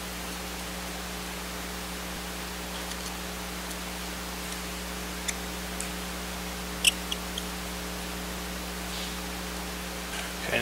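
Steady background hiss with a low electrical hum. A few small, sharp clicks come about five to seven seconds in, as a precision screwdriver works a tiny screw into a laptop circuit board.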